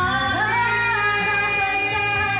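Karaoke singing into a microphone over a backing track: a sung note slides up about half a second in and is held for more than a second.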